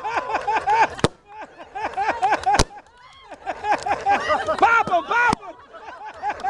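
Balloons being crushed under men's bodies pop three times, sharp single bangs spread through a few seconds, over a group of people laughing and shrieking in quick repeated bursts.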